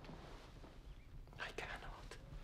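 Quiet room tone, with a short breathy exhale from a man about one and a half seconds in.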